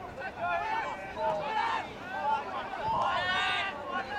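Several voices shouting and calling out over one another without clear words, with one loud, drawn-out yell near the end.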